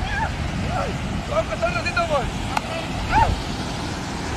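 Wind rumbling on the phone's microphone over beach surf, with a few faint, short distant voices now and then.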